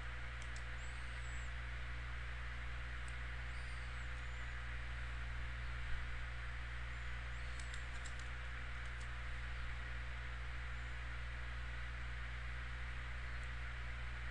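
Steady low electrical hum with an even background hiss, broken by a few faint short clicks.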